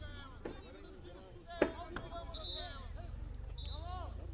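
Players' voices calling across a football pitch, with one sharp thud of a ball being kicked about one and a half seconds in and a lighter knock just after, over a steady low rumble.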